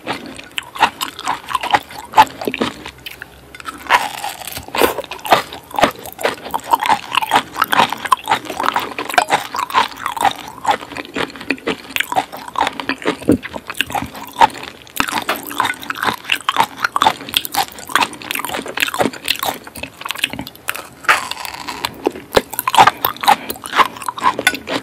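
Close-miked chewing of raw palm weevil larvae (coconut worms) soaked in fish sauce: a dense, irregular run of wet mouth clicks.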